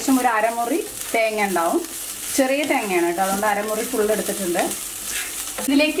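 A wooden spatula stirring and scraping grated coconut filling around a hot pan, with a light sizzle.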